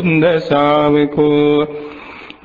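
A Buddhist monk's male voice chanting Pali verses in a slow, melodic recitation, holding long steady notes. The chant breaks off near the end.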